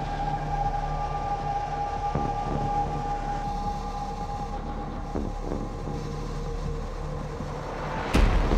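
Military jet engine heard from inside the cockpit in flight: a steady high whine over a low rumble.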